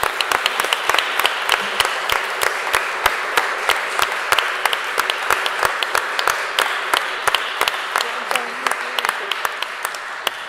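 Room full of people applauding: steady clapping with many sharp single claps standing out, thinning out and fading near the end.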